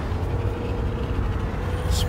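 Steady low rumble of engine and road noise heard inside a moving vehicle's passenger cabin, with a faint steady hum above it.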